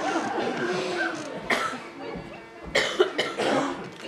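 Indistinct voices fading away, then a few short coughs, about halfway through and again near the end.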